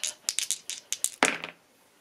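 Two plastic dice shaken in a cupped hand, a quick run of small clicks, then tossed into a fabric-lined dice tray, with a last, stronger clack about a second and a quarter in.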